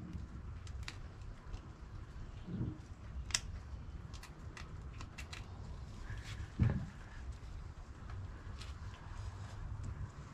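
Quiet handling of a vinyl wheel decal letter being peeled up and repositioned on a motorcycle wheel rim: faint scattered clicks and two short low thuds over a low background hum.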